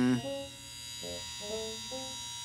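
Cartoon crane's winch motor whining steadily as it hoists a load.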